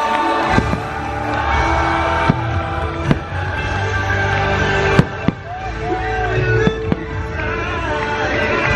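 Fireworks bursting over loud show soundtrack music: several sharp bangs, the loudest about five seconds in.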